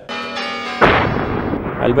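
Film sound-design transition: a steady ringing tone, then a sudden loud blast-like hit just under a second in that fades away over the next second.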